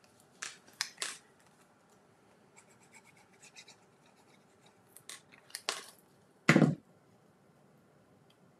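Small crafting handling sounds: a few sharp clicks and rustles as a liquid glue bottle is opened and glue is spread on a small cardstock piece, with faint scratchy ticks in the middle and a louder short thud about six and a half seconds in.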